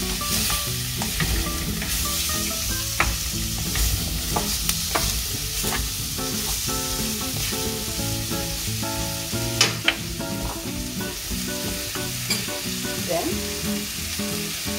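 Apple pieces frying in a clay pot with a steady sizzle, as a spoon stirs and scrapes through them with a few sharp knocks against the pot.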